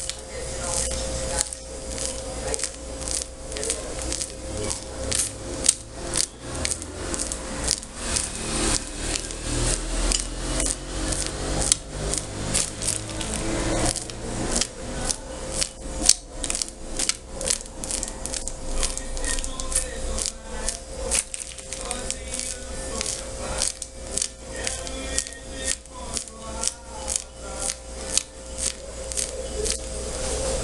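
Plastic piping bag squeezed again and again as whipped cream is pushed through a grass tip, one short sharp stroke per strand, about two a second, over a steady hum.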